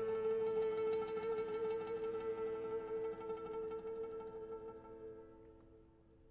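Accordion holding a steady final chord while an oud plays rapid repeated plucks over it. The music dies away over the last second or so as the piece ends.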